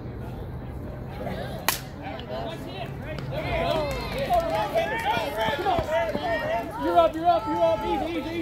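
A slowpitch softball bat hitting the ball, one sharp crack just under two seconds in, followed by several players and spectators shouting and yelling over one another as the ball is fielded.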